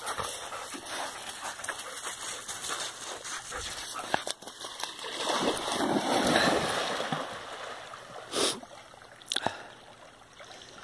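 A dog running into shallow lake water, splashing and sloshing, loudest midway through, then quieter as it swims. Two sharp knocks come near the end.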